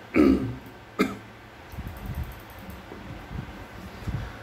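A man clearing his throat once near the start, followed by a single short, sharp click about a second in.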